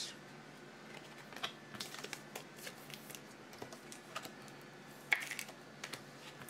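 Faint, scattered clicks and taps of trading cards in hard plastic holders being handled and stacked on a table, with one sharper tap about five seconds in.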